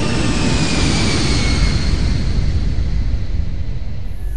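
Rumbling whoosh sound effect from an animated channel intro, with a whistling tone that falls in pitch over the first two seconds.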